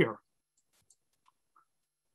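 A spoken word ends, then near silence with a few faint, short clicks.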